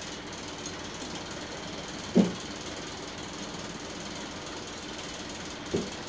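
A steady low machine hum with faint ticking, and a brief voice sound about two seconds in.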